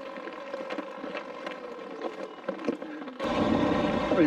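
Talaria Sting electric dirt bike rolling along a gravel road with a faint steady motor whine and small crunches from the tyres. About three seconds in, the sound abruptly turns louder, to the rumble of wind and tyres on a dirt road at riding speed.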